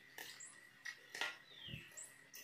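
Faint eating sounds: a few light clicks of forks against plastic takeaway containers, with a short low thump and a brief falling squeak late on.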